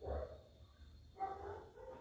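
Two short vocal calls with a clear pitch, one at the start and another a little over a second later.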